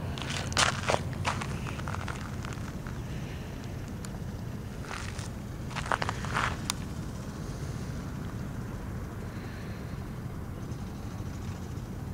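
Footsteps on gravelly dirt, in two short clusters: one about half a second in and one around five to seven seconds in, over a steady low background hum.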